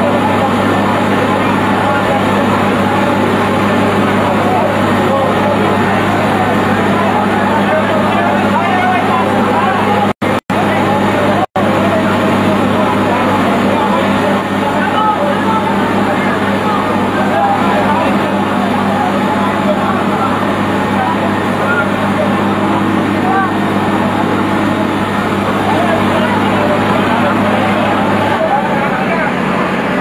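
A fire truck's engine runs steadily with a low hum that changes pitch near the end. Voices of the people around it are heard throughout.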